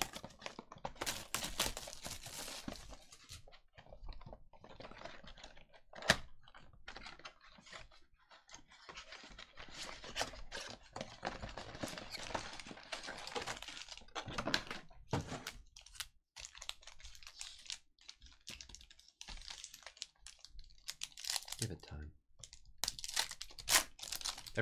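A cardboard trading-card hobby box being torn open by hand and its card packs unwrapped: irregular tearing, rustling and crinkling of cardboard and pack wrappers, with scattered sharp clicks and taps, the loudest about six seconds in.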